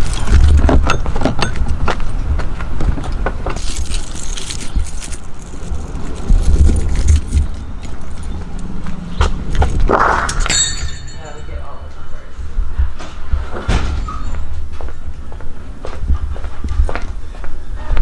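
Handheld walking noise, with low rumble on the microphone and scattered knocks and footsteps. A glass shop door is pulled open about ten seconds in.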